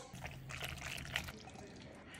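Faint wet pouring and dripping of thick beet sauce from a blender cup onto cooked penne in a steel pot, with a few soft ticks.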